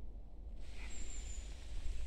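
Outdoor background noise: a steady low rumble with a hiss that rises about half a second in, and a brief thin high whistle about a second in.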